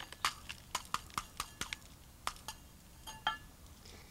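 Gravel poured from a small metal cup into a cup already full of gravel: a run of sharp ticks and clicks as the small stones drop and settle, with a brief metallic clink about three seconds in.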